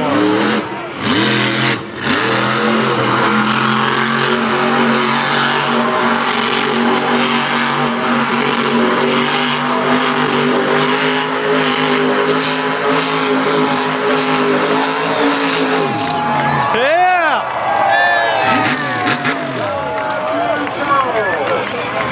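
Monster truck's supercharged V8 held at high revs while the truck spins donuts, steady for about fourteen seconds. Near the end the revs drop off sharply, then rise and fall in a few short blips.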